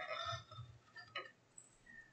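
Craft knife blade cutting into chipboard on a glass cutting mat: faint scraping, then a few small ticks about a second in.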